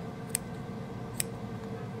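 Two sharp snips of dissecting scissors cutting through a preserved rat's abdominal wall, about a second apart.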